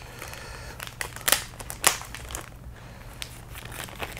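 Thin clear plastic bag crinkling as it is handled and opened around a sprue of clear plastic model-kit parts, with a couple of sharper crackles a little over a second in and just under two seconds in.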